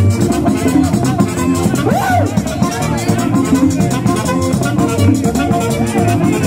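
Live merengue típico band playing: accordion melody over a tambora drum and the steady scraping of a metal güira, with a saxophone, in a fast, even beat.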